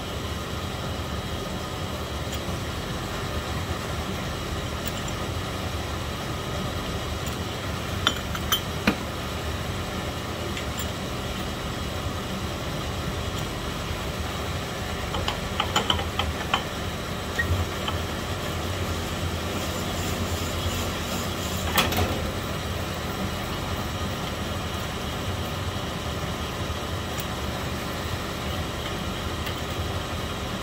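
Sunnen LBB-1699 precision honing machine running steadily while a forged aluminium piston's wrist-pin bore is stroked back and forth over its spinning mandrel, honing the bore out for pin clearance. A few sharp metal clinks come from the piston against the mandrel and fixture, around eight seconds in, around sixteen seconds and again near twenty-two seconds.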